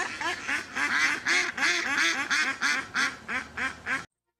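Duck quacking in a rapid run of about four quacks a second that swells and then fades, cutting off abruptly at the end.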